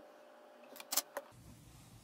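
A quick cluster of three or four sharp clicks about a second in, from a soldering iron and the breadboard being handled on a desk, over a faint steady hum. Just after the clicks the hum gives way abruptly to a lower one.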